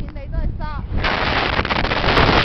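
Wind buffeting the microphone, dropping away briefly and then cutting back in loud about halfway through. During the lull, faint short wavering voices can be heard.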